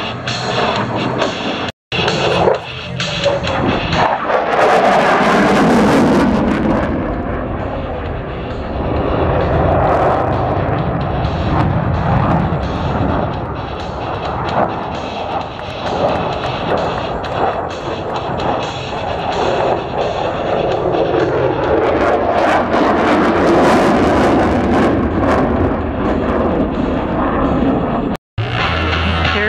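Military jet roaring past at speed, swelling to a peak about four seconds in and again about twenty seconds in, the roar dropping in pitch as the jet goes by.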